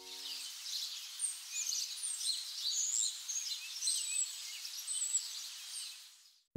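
Small birds chirping and singing in many short, high calls over a steady hiss of outdoor ambience.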